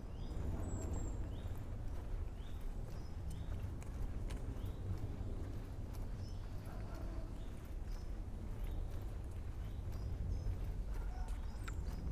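Footsteps walking at a steady pace on a tarmac path, with faint bird chirps and a low steady rumble underneath.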